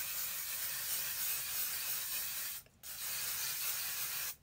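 Cape aerosol hairspray being sprayed onto hair in long hissing bursts, with a short break a little before three seconds in before the spraying resumes.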